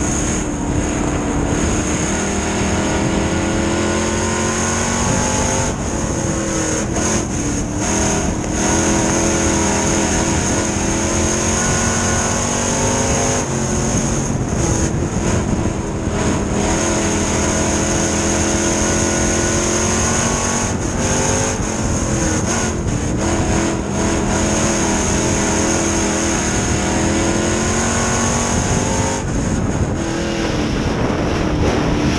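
Street stock race car's engine heard from inside the cockpit under racing load. The revs drop as the driver lifts for each turn and climb again on the throttle, in cycles about every eight seconds, with a steady high whine over it.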